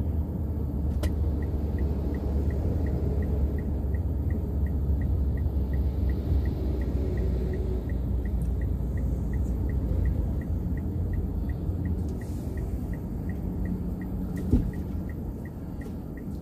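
Road and engine rumble inside a Mitsubishi Xpander's cabin as it drives and then slows, with the indicator clicking in an even, quick ticking as the car pulls over. A single thump comes near the end.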